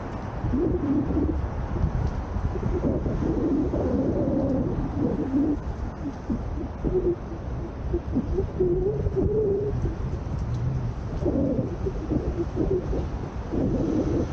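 Wind buffeting the microphone of a moving bicycle's camera, with road traffic under it and a low, wavering hum that comes and goes in patches of about a second.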